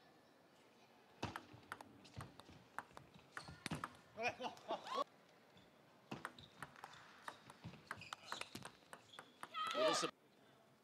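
Table tennis rally: the ball clicks sharply off the rackets and the table in a quick, irregular series. Voices shout out at the close of the point, about five seconds in. Scattered clicks and a loud shout follow near the end.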